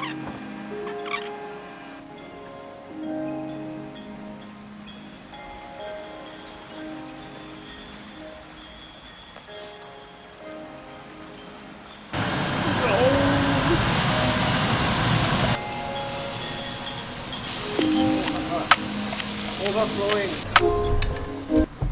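Background music with held notes. About twelve seconds in, a loud steady hiss of stuffed beef rolls sizzling in an oiled frying pan cuts in under the music, then eases and keeps going to the end.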